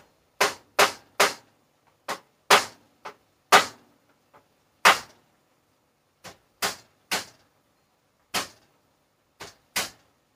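A metal utensil knocking and clinking against a cooking pot at the stove: about fourteen sharp taps at an uneven pace, with short pauses between them.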